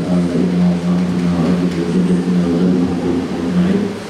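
A man chanting a recitation into a microphone, holding long drawn-out notes at a nearly steady pitch with short breaks between them.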